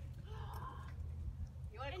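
Mostly speech: a faint, distant voice about half a second in, then a close voice starting near the end, over a steady low rumble.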